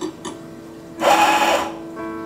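Anfim Scody II coffee grinder motor running in one short burst of under a second, about a second in, topping up the dose in the portafilter; a couple of light clicks of the portafilter against the grinder come just before.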